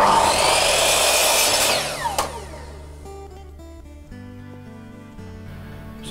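Electric mitre saw cutting through a length of timber for about two seconds, its motor then winding down with a falling whine.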